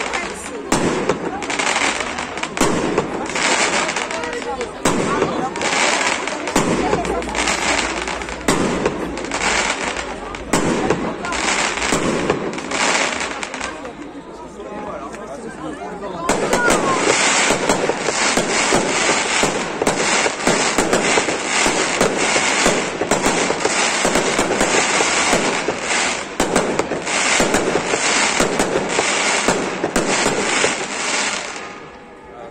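Fireworks display: aerial shells launching and bursting in a steady run of sharp bangs. There is a brief lull about halfway through, then a denser stretch of rapid, overlapping bangs.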